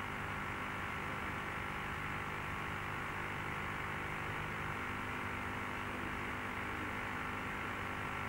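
Steady static hiss with a faint low hum, left running after the music cuts off, like a dead radio or tape channel.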